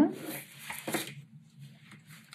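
Faint rustling of chunky yarn with a couple of soft taps from wooden knitting needles as a knit stitch is worked.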